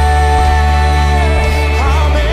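Live worship band with several singers: a long held sung note over sustained keyboard chords and bass, giving way near the end to a new line of singing.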